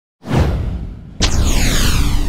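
Two whoosh sound effects from an intro animation. The first swells up just after the start and fades. The second hits sharply about a second in and sweeps down in pitch.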